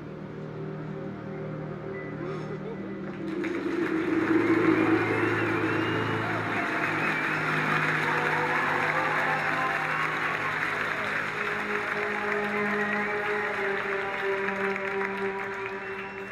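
Film soundtrack: sustained background music, joined about three seconds in by a crowd of many voices chattering and cheering, which then carries on under the music.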